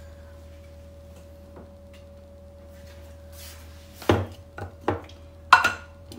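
A low steady hum, then from about four seconds in a quick run of sharp knocks and clinks, the loudest near the end, as kitchen containers and utensils are handled on a countertop.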